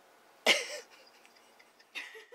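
A person coughs once, sharply, about half a second in.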